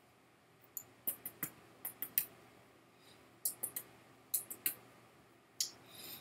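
Wet mouth clicks and lip smacks in short clusters of a few at a time, from a sip of whisky being worked around the mouth and tasted.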